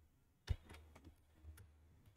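Faint clicking on a computer's keys or mouse: one sharp click about half a second in, then several lighter clicks, over a low steady hum.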